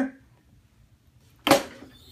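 A single sharp metallic clunk from a Hotronix 16x20 Auto Clam heat press, about a second and a half in, as the press is worked for a quick pre-press. The clunk has a short ringing tail.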